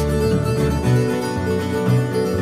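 Instrumental break in a country-folk song: acoustic guitar being picked over electric bass guitar, with no singing.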